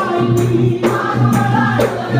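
Boduberu performance: several large hand-beaten barrel drums play a driving, steady beat under a group of men singing in chorus.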